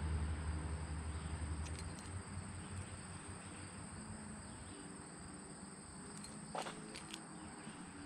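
Quiet outdoor background: a low engine hum fades away over the first two seconds, leaving faint steady background noise. A couple of light clicks near the end come from a key ring being handled.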